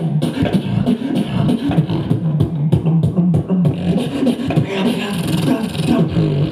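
Live beatboxing into a microphone cupped in the hands: fast drum-like mouth percussion over a steady pitched hummed bass line.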